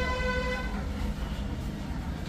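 A vehicle horn toots once, a steady single-pitched note that ends under a second in, over a constant low rumble of street traffic.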